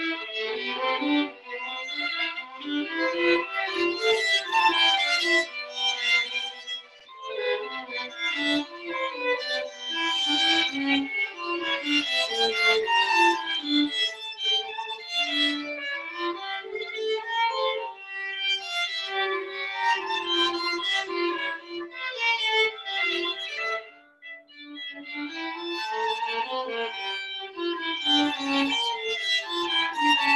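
Two violins playing a duet, the parts moving quickly note to note. About three-quarters of the way through the playing briefly stops, then picks up again.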